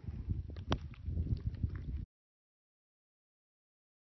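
Wind buffeting a phone's microphone outdoors in snow, a gusty low rumble with a sharp click less than a second in. The sound cuts off abruptly about two seconds in, leaving dead silence.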